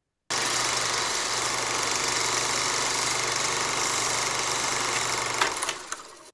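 Film projector sound effect: a steady mechanical whirring that starts suddenly and fades out near the end.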